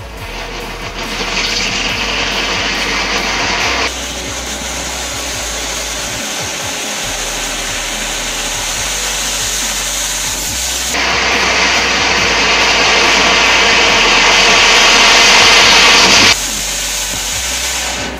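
Ground fountain firework spraying sparks with a loud, steady hiss that strengthens about a second in, eases off around four seconds, surges again around eleven seconds and drops away sharply a couple of seconds before the end. Background music plays underneath.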